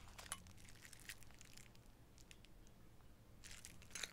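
Near silence with faint scattered clicks and rustles of small metal cake-decorating piping tips being handled, one click a little louder about a third of a second in.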